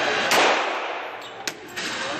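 A handgun shot in an indoor range, a sharp report ringing out in the enclosed lane and dying away over about a second. A second, fainter crack follows about a second later.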